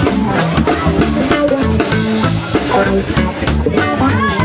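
Live band of electric bass, electric guitar and drum kit playing an instrumental passage with a steady drum beat. More cymbal comes in about halfway through.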